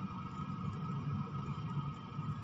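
Steady low mechanical hum with a thin, constant high whine above it.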